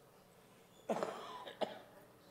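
A person coughs about a second in, with a short second cough just after.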